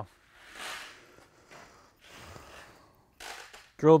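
A few faint, soft breaths, the last a short intake of breath just before speech resumes.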